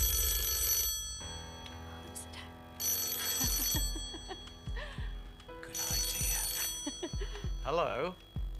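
An old-style desk telephone bell ringing three times, each ring about a second long, over tense background music with a low pulsing beat.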